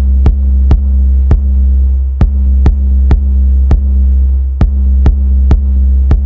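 A loud, steady low electronic hum, with sharp clicks about twice a second.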